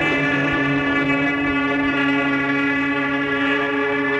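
A live rock band holding one long, distorted chord: a steady, droning tone full of overtones that starts fresh at the beginning and is held without a break.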